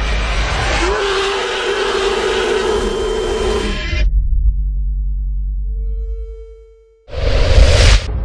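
Movie-trailer score and sound effects: a dense wash of noise with a held droning tone, cutting off abruptly about four seconds in to a low hum and a faint steady tone. After a brief drop to near silence, a loud sudden noisy hit comes near the end.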